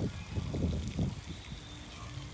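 Wind buffeting the microphone: a low, uneven rumble that eases off about halfway through.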